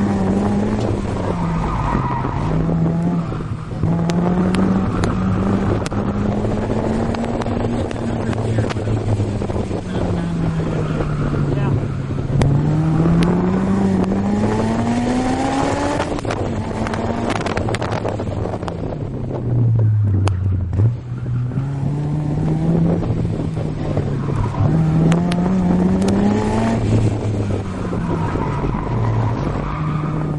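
Honda S2000's four-cylinder engine heard from inside the open-top car at speed on a track. The engine note climbs in pitch under acceleration and drops off repeatedly on lifts and downshifts, over steady wind and road noise.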